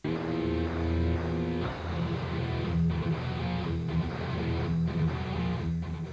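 Theme music with guitar for the show's title sequence, starting abruptly out of silence.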